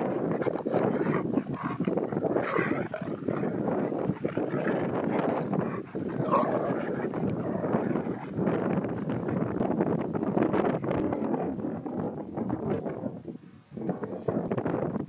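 Two huskies vocalizing as they play together, a near-continuous run of grumbling dog sounds with a few louder calls.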